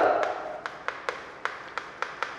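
Chalk tapping on a chalkboard while writing: a run of short, sharp clicks, about four or five a second, as each stroke lands.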